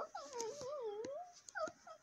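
A soft, wordless whimpering voice: one wavering, drawn-out tone lasting about a second, with a few faint short sounds after it.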